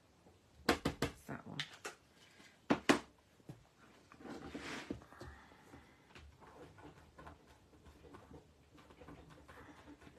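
Quick, sharp taps of an ink pad being dabbed onto a stamp to re-ink it darker, then two louder knocks about three seconds in, followed by a soft rustle and quiet handling.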